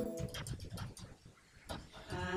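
Computer keyboard being typed on: a quick, uneven run of soft key clicks. A short pitched tone fades out at the very start.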